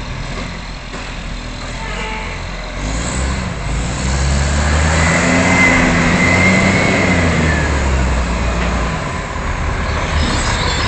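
Iveco side-loading garbage truck's diesel engine pulling away and accelerating up the street, growing louder as it approaches. From about three seconds in, the engine note rises and falls with the revs, and a thin whine rides over it while it speeds up.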